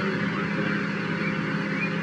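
Steady outdoor background noise: an even hiss with a constant low hum, with no distinct events.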